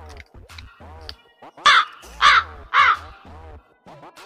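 A crow cawing three times in quick succession, each caw short and arched in pitch, over background music with a repeating low beat.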